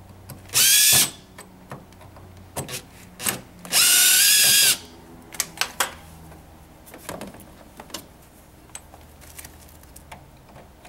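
Cordless drill/driver backing out Phillips screws from a plastic cover: two short runs of the motor whine, under half a second about half a second in and about a second long near the middle. Light clicks and knocks follow as the screws and cover are handled.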